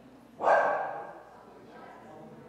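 A dog barks once, loudly and sharply, about half a second in, and the bark dies away quickly.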